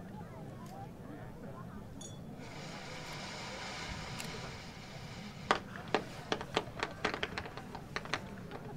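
Fireworks going off: a hiss lasting a couple of seconds, then from about two-thirds of the way in a quick, irregular series of about a dozen sharp bangs from bursting shells, the first the loudest.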